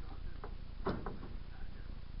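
A few light clicks and one sharper click about a second in from a ratchet tie-down strap being worked to strap a load down, over a steady low rumble.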